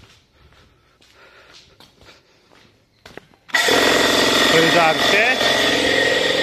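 Electric air compressor switching on about three and a half seconds in and then running loud and steady, after a few faint clicks and handling sounds.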